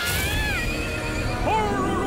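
A horse whinny sound effect, with a wavering, gliding pitch, over cartoon background music.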